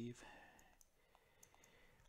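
Near silence broken by a few faint clicks of a stylus tapping a tablet screen as digits are written.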